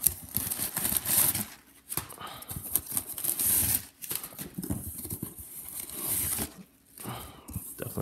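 Cardboard shipping box being handled and crumpled kraft packing paper pulled about inside it: paper rustling and crinkling, cardboard flaps scraping and clicking, in several bursts with short pauses.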